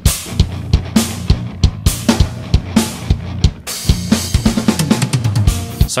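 BFD3 virtual acoustic drum kit playing back a steady groove of kick, snare and cymbals, sounding with a backing track that carries a sustained bass line.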